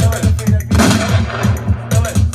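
House music mix played from a laptop DJ controller over studio speakers, with a steady kick drum beat of about four a second. About two-thirds of a second in, a loud crash-like burst of noise in the mix swells and fades away over about a second.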